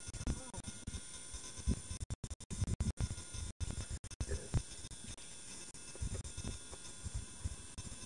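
Camcorder recording noise with no clear sound source: irregular low bumps on the microphone over a steady hiss and a faint high whine. The sound cuts out completely several times in the middle, in short gaps.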